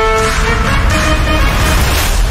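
Film background music with held tones that fade about half a second in, over a low motor-vehicle engine rumble that grows louder toward the end.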